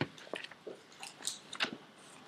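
Bible pages being leafed through: a few brief, faint rustles and soft ticks of paper.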